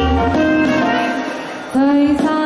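Live band music: a saxophone and backing instruments play between a woman's sung lines, and her voice comes back in with a loud note near the end.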